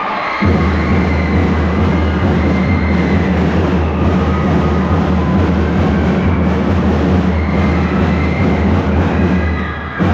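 A drum and lyre corps starting to play sharply about half a second in: a loud, dense and steady low drum rumble with the band's higher sounds above it. It dips briefly just before the end.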